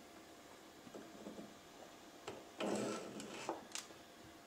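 Faint handling of a thin plastic magnifier sheet being fitted back in front of the cockpit screens: small rustles about a second in, a louder scraping rustle just past halfway, and a sharp click near the end.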